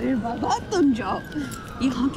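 A distant emergency-vehicle siren in city street ambience, one slow wail that rises a little and then falls away, under people's voices.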